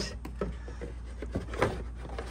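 Plastic air filter housing of a C5 Corvette's air cleaner being slid back into its slot by hand, with a few light plastic knocks and scrapes, the sharpest about a second and a half in.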